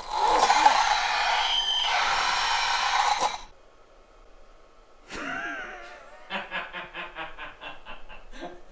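Homemade electric bike's brushless hub motor making a loud, rough noise under throttle that cuts off abruptly after about three and a half seconds: the motor falling out of sync with its controller. Near the end a man laughs in short rhythmic bursts.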